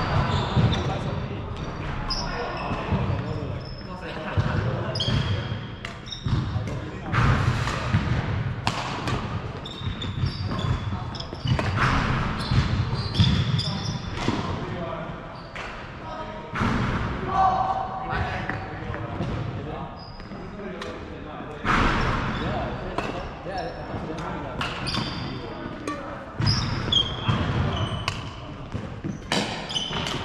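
Doubles badminton play on a wooden sports-hall floor, echoing in the large hall: repeated sharp racket strikes on the shuttlecock, thudding footsteps and short high shoe squeaks.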